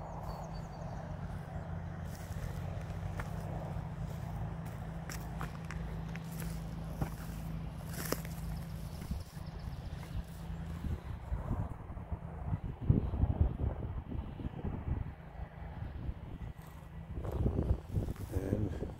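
Footsteps of a person walking over dry grass and uneven ground, irregular and heavier in the second half, over a steady low wind noise on the microphone.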